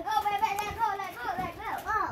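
A child's high voice gives one long, held call lasting about a second, then a couple of shorter rising cries near the end: excited shouting at play.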